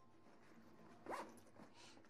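Near silence: faint room tone, broken about a second in by one short rising squeak.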